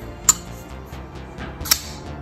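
Civivi Praxis liner-lock flipper knife clicking twice, about a second and a half apart, as the blade is folded shut and then flicked open on its flipper, over background music.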